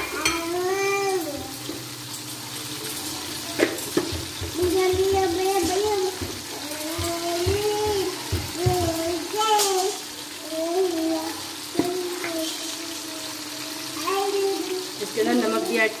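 Diced potatoes and onions frying in oil in an aluminium kadhai, stirred with a spatula that now and then clicks against the pan. A high-pitched child's voice talks on and off over the frying.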